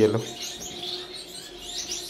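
Many small finches chirping in an aviary: a dense patter of short, high, faint chirps, with a faint steady hum underneath.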